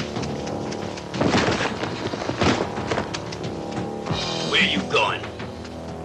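Film score music under dubbed fight sound effects: heavy hits about one and two and a half seconds in, then short shouts from the fighters near the end.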